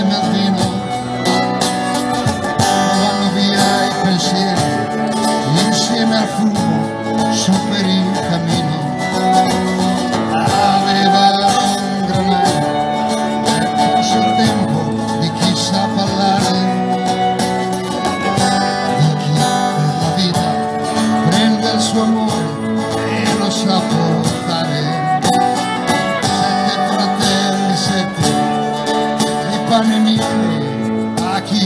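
Live band playing an instrumental passage of a song on violin and guitars, with a brief sung phrase about three-quarters of the way through.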